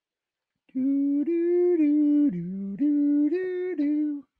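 A man humming a short tune in a series of held, steady notes, with one lower note in the middle; it starts just under a second in and stops just after the end.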